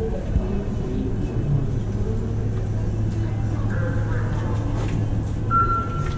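Indoor pool crowd chattering with a steady low hum underneath. Near the end an electronic start signal sounds a single steady beep as the swimmers dive off the blocks.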